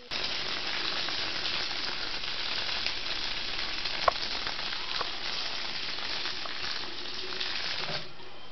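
Water running from a bathroom sink's mixer tap and splashing over hands being washed, a steady hiss that starts abruptly, with a brief click about four seconds in.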